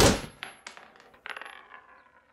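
Spent brass shell casings dropping and bouncing on a hardwood floor after a quick series of pistol shots: a few light metallic clinks with a thin ringing that dies away. The tail of the last shot is heard at the very start.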